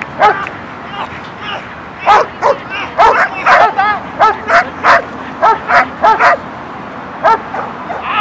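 A dog barking in short, high-pitched yips, a dozen or more in quick runs, during protection bite-work with a decoy.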